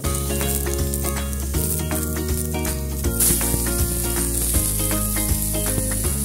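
Pork fat and skin pieces sizzling in a frying pan as the fat renders; the sizzle grows louder about halfway through.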